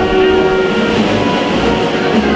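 Processional concert band (banda de música) playing a Holy Week march: held brass and woodwind chords over a low bass line.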